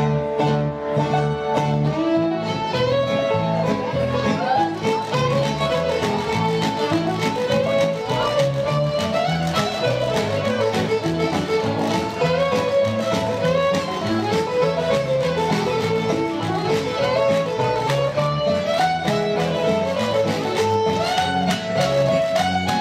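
Live string band playing an upbeat tune, the fiddle carrying a running melody over a steady strummed guitar rhythm.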